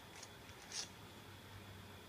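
Quiet room tone, with a faint brief rustle about three-quarters of a second in.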